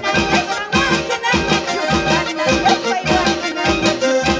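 Andean band music with a steady, lively dance beat and a reedy melody over it.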